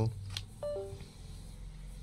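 A USB Ethernet adapter is unplugged from a Windows laptop: a click, then the Windows device-disconnect chime, two short tones falling in pitch, which signals that the adapter has been removed.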